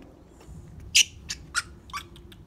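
Baby monkey giving a few short, high squeaks in the second half, about three a second, the first the loudest.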